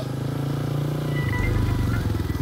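Motorcycle engine running as it approaches, its note dropping a little over a second in as it slows.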